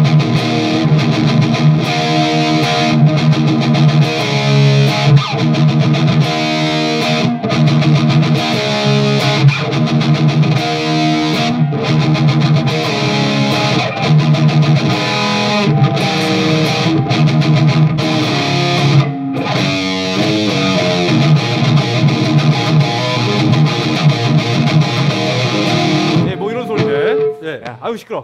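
Electric guitar played through a KHDK Ghoul Screamer overdrive pedal, set with its gain turned down to boost an already driven amp. It plays a heavy distorted rhythm riff of repeated chords with short breaks, ending near the end on a held note that fades.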